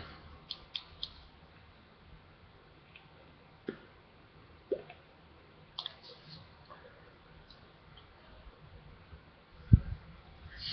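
Quiet draw on an iTaste MVP e-cigarette: faint hiss with a few small clicks and mouth sounds scattered through it, then a single low thump near the end.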